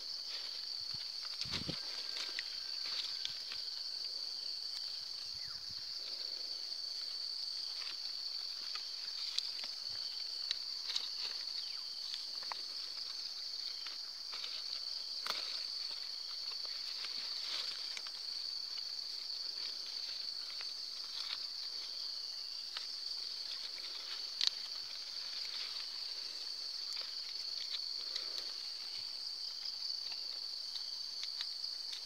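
A steady, high-pitched insect chorus, with scattered soft crinkles and clicks from plastic grafting tape being wound by hand around a durian graft.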